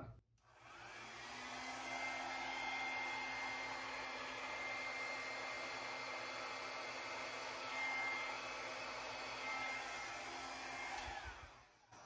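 Hair dryer blowing steadily over a canvas, pushing wet acrylic paint outward in a Dutch-pour 'bump out'. It starts just under a second in and cuts off near the end.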